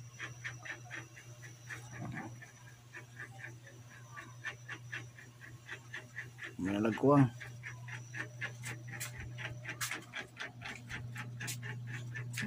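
Coconut milk boiling in a wok, with irregular small pops and crackles of bursting bubbles over a steady low hum. About seven seconds in there is a short voice-like sound.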